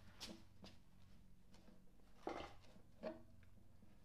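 Near silence: a low steady hum, with a few faint, brief rustles and knocks as a cloth rag is wiped over a metal fitting inside a wooden phonograph cabinet.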